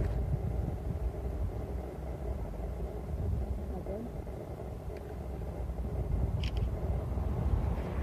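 Gusty wind buffeting the microphone outdoors: an uneven low rumble with no clear pitch, holding steady with small surges.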